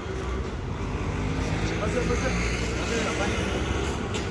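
Street traffic with a motor vehicle's engine running close by, a steady rumble that swells slightly mid-way, under indistinct voices.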